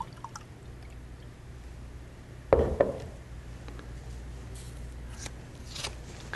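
Green-tinted water poured from a plastic pitcher into a small glass jar, a faint trickle, then a single knock about two and a half seconds in as the pitcher is set down on the bench, followed by a few faint scratchy handling sounds.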